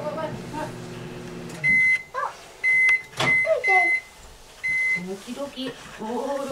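Microwave oven humming steadily, then its hum cuts out about a second and a half in as the cycle finishes. A run of short, high end-of-cycle beeps follows, with a sharp click among them.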